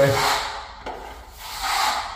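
Steel finishing trowel rubbed across a dry joint-compound top coat, scraping in two sweeping strokes, the second longer. The trowel barely takes anything off, the sign of a smooth finished coat that needs no sanding.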